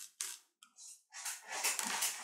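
Flat paintbrush dabbing and scraping craft mousse through a stencil: short scratchy brush strokes, then a pause of about half a second before they start again.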